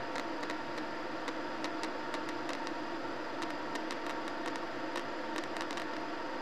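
Air purifier fan running with a steady hum and hiss, with faint scattered ticks over it.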